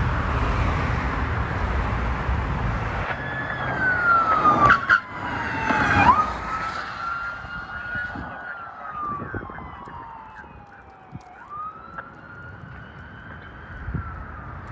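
Road traffic noise, then a police car's siren on a slow wail, its pitch sweeping down and up over a few seconds at a time, with a quick jump back up about six seconds in. The siren grows fainter through the second half.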